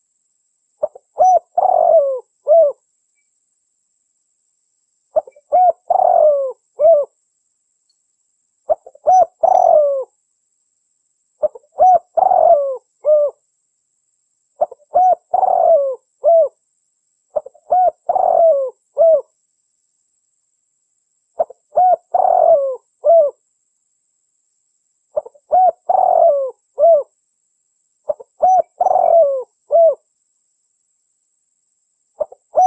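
Spotted dove cooing: a phrase of several short, low coo notes given about every three to four seconds, nine times, with silence between phrases.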